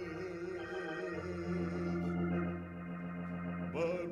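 Organ, Hammond-style, playing slow, sustained chords, with a note near the end that slides up in pitch.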